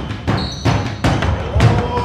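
Basketball dribbled on a hardwood gym floor, a series of sharp bounces about every half second, with a short squeak of sneakers on the court.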